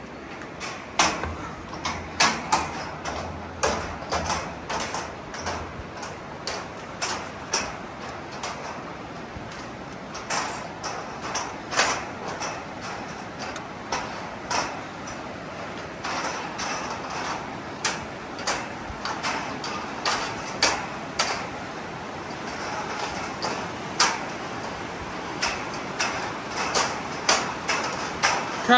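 Footsteps and trekking-pole taps knocking on the metal deck of a suspension footbridge, a sharp strike about every half second, over the steady rush of a fast-flowing river below.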